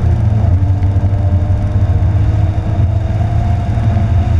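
Porsche 911 GT3's flat-six engine heard from inside the cabin, pulling along a straight with its revs climbing slowly, over a heavy, steady low rumble of road and wind noise.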